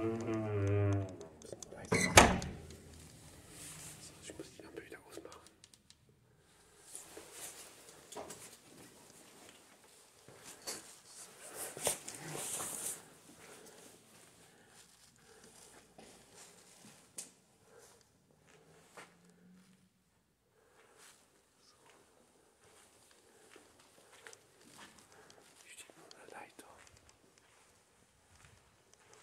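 Footsteps and shuffling, handling noise as someone moves slowly through an empty building, with scattered soft clicks. A single loud thunk comes about two seconds in.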